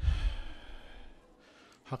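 A man's sigh into a close lectern microphone: a sudden breath pop with a low thump at the start, then a breathy rush that fades away within about a second.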